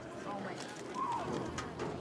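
Faint, distant voices of players and spectators, with a few light clicks.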